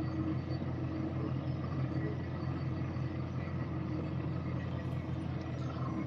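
A steady low hum from a running motor, with an even background noise and no change in pitch or level.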